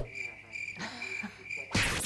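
Crickets chirping at one steady high pitch. Near the end comes a short, loud burst of static-like electronic glitch noise, a transition sound effect.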